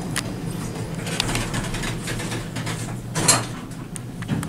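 Westinghouse traction elevator's two-speed cab doors sliding closed and the car setting off: a steady low hum with a few clicks and a louder clunk about three seconds in.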